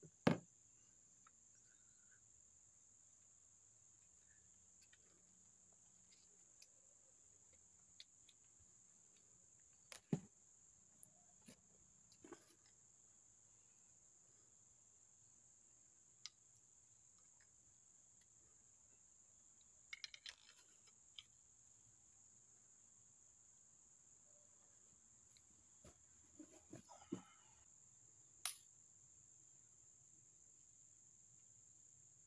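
Faint, steady high drone of insects. Over it come scattered sharp clicks and knocks as a crossbow and its parts are handled, the loudest just at the start and small clusters about two-thirds of the way in and near the end.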